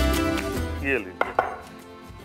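Two sharp knocks, about a fifth of a second apart, as the base of a small glass strikes a wooden board to crush green cardamom pods.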